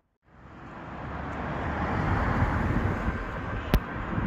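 Outdoor traffic noise from a vehicle, rising over about two seconds and then holding steady, with a sharp click near the end.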